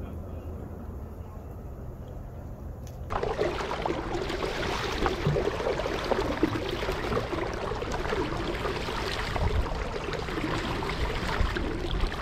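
Water splashing and trickling around a kayak being paddled on a river, starting abruptly about three seconds in after a quieter low hum.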